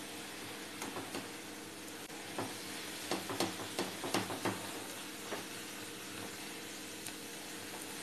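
Mashed aubergine masala sizzling steadily in a white-coated wok while a black plastic slotted spatula stirs and scrapes through it. The scraping strokes come in a quick run from about two to five seconds in, with a few single ones before and after.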